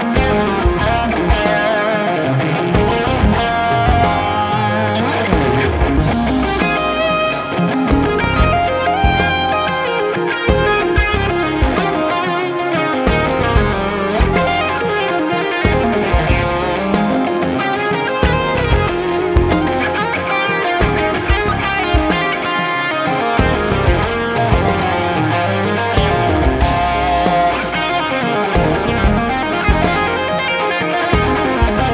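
K-Line Springfield, a Strat-style electric guitar with three single-coil pickups, played with effects in continuous melodic lead lines.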